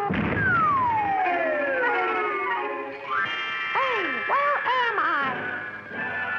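Cartoon time-travel sound effect over music: a sudden hit, then a long whistling glide falling in pitch, a rising sweep, and a run of short swooping boings before held tones.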